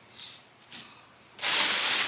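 Faint handling of sequined fabric, then about one and a half seconds in a shopping bag starts rustling loudly as it is rummaged through.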